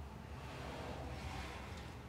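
Faint steady background noise: a low hum with light hiss and no distinct knocks or clicks.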